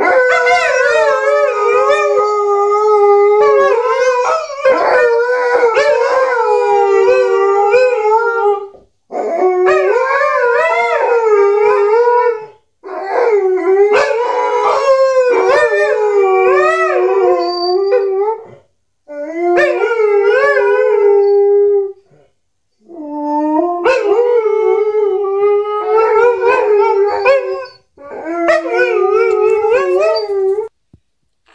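Two Alaskan malamutes howling together in long, wavering calls that rise and fall in pitch, broken into several phrases by short pauses.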